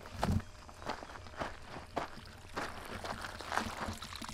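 Footsteps crunching on loose gravel and stones, about two steps a second, as someone walks down a rocky slope.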